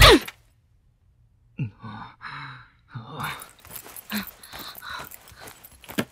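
Loud music cuts off suddenly. After a second of silence comes a series of short, breathy human vocal sounds, gasps and sighs, some with a brief falling pitch.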